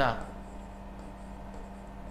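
Faint scratching of a stylus writing on a drawing tablet over a steady low electrical hum.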